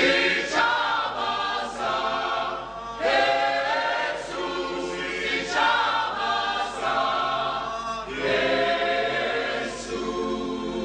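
A choir singing, many voices together in about four phrases.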